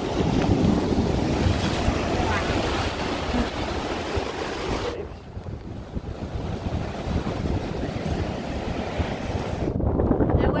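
Rough sea waves surging and breaking over rocks, with wind buffeting the microphone. About halfway through, the sound turns to a duller, steady rush of surf rolling onto a sandy beach.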